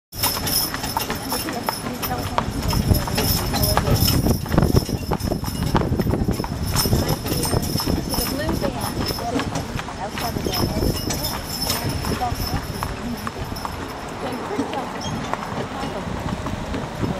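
Indistinct voices of several people talking, over many uneven clicks and knocks.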